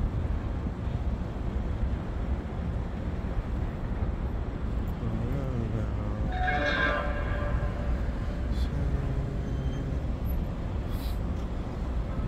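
Outdoor city ambience: a steady low rumble of distant traffic and air across an open plaza. About six seconds in there is a brief pitched sound, a call or tone lasting about a second.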